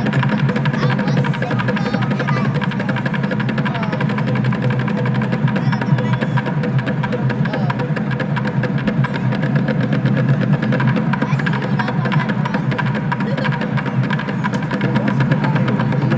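Bucket drumming: several drummers beating large plastic buckets with drumsticks in a fast, dense, unbroken run of hits.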